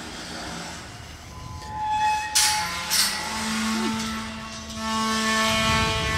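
Steel pipe corral gate being swung shut: two sharp metal clanks about two and a half and three seconds in, with steady metallic ringing tones lingering after them.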